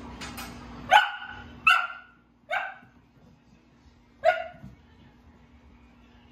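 Dalmatian puppy barking: four short, high-pitched barks spaced unevenly over a few seconds.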